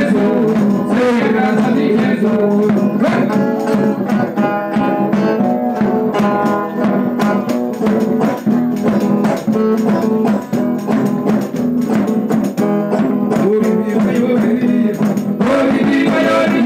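Live music for a São Gonçalo circle dance: singing over strummed string instruments and a steady percussive beat.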